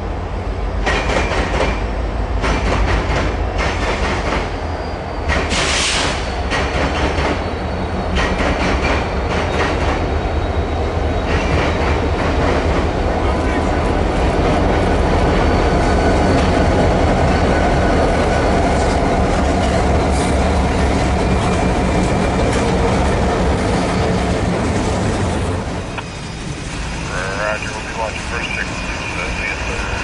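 Freight train led by a BNSF GP39E diesel locomotive passing close by: the locomotives' diesel engines rumble, loudest through the middle as they go by. The train then drops back to the steel wheels of the freight cars clattering over the rails, with a high wheel squeal near the end.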